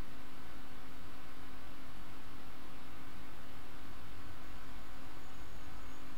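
Steady background hiss with a faint, even hum underneath: the room and recording noise, with no distinct event.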